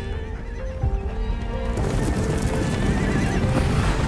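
A horse whinnying over dramatic music, joined about two seconds in by a dense clatter of hooves.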